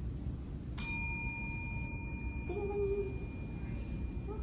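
A desk service bell on a reception counter is struck once with a bright ding, and its ring fades over about three seconds.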